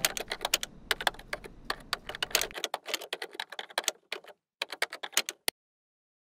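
Typing on a computer keyboard: quick, irregular key clicks that stop about five and a half seconds in.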